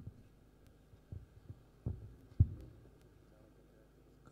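Handheld microphone being handled, giving a few short low thumps, the loudest about two and a half seconds in, over a faint steady hum.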